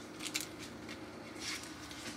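Light handling sounds of a pen and small spiral notepad: a couple of quick clicks about a quarter second in and a soft rustle around a second and a half, as the pen is fitted into a metal pen clip on the notepad's edge.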